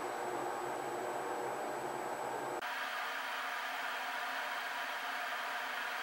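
Steady background hiss with no distinct sounds. About two and a half seconds in, a faint high whine stops and the hiss changes abruptly.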